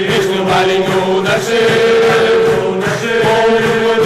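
A group of men singing a slow song together in held notes, with strummed guitars accompanying.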